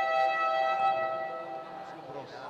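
Basketball game buzzer sounding one long steady tone that fades out near the end.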